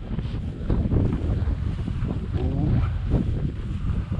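Wind buffeting the microphone in a low, uneven rumble, with dry cattail stalks rustling and brushing as someone walks steadily through them.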